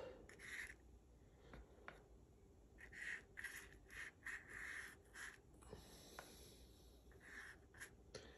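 Faint brushing strokes of a paintbrush on cardboard: a run of short, soft swishes, bunched in the middle, with a few light ticks between them.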